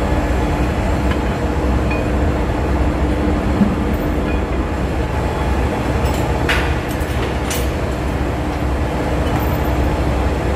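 Steady engine-room machinery noise, a loud low drone with a constant hum. A few sharp metallic clinks come about six and a half and seven and a half seconds in.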